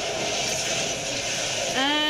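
A steady rushing whoosh from a TV show's sound effects for a superhero speedster running with lightning. A voice comes in near the end.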